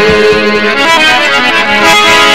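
A harmonium plays sustained chords and melody. A singer's held, wavering note trails off about half a second in.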